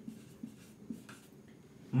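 A marker pen writing on a whiteboard: faint, short strokes as letters are drawn.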